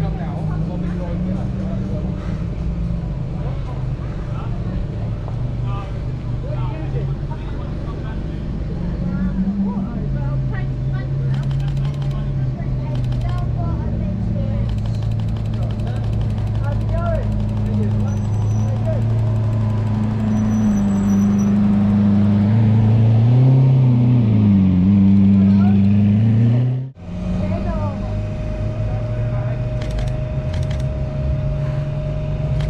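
Lamborghini supercar engine running at low revs, a deep steady note that grows louder as the car comes close, with a brief dip and rise in pitch near the end. The sound cuts off abruptly about 27 seconds in, and a similar engine note carries on afterwards.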